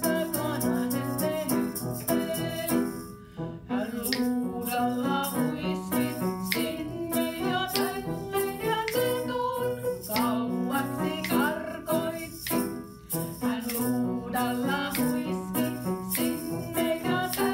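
A children's song sung to instrumental accompaniment, with shaken rattles adding percussion throughout.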